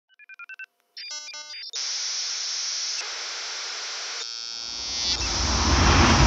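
Electronic logo-intro sound effects: a quick run of short high beeps in two alternating pitches, a burst of chirping multi-tone bleeps, then a steady static hiss. The hiss gives way to a low rumble that swells into a whoosh near the end.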